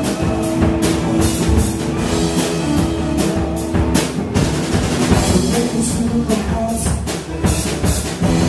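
A rock band playing live: a drum kit keeps a steady beat under electric guitar, bass and keyboards, with one long held note through the first half.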